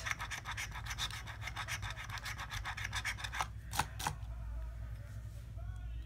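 A coin scratching the latex coating off a scratch-off lottery ticket in rapid, even back-and-forth strokes, which stop about three and a half seconds in. Two sharp clicks follow.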